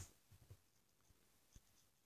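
Near silence with a few faint taps of a stylus writing on a tablet screen.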